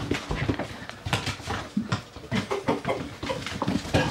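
Rottweiler puppies' claws clicking and scuffing irregularly on a tile floor as they scramble about.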